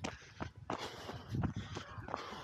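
A runner panting hard and out of breath just after finishing a 5 km run, in short noisy breaths, with a few footsteps.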